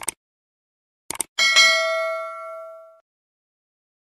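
Subscribe-button sound effect: a quick double mouse click, another double click just over a second later, then a bright notification-bell ding that rings and fades out by about three seconds in.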